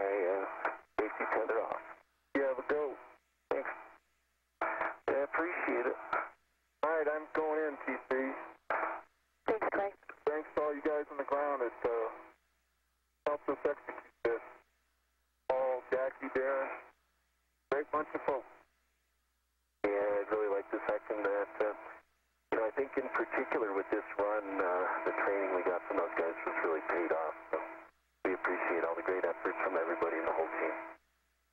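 Speech over a spacewalk radio loop: thin, narrow-band voices in short transmissions of a second or a few seconds each, with clean silences between them as the channel keys on and off.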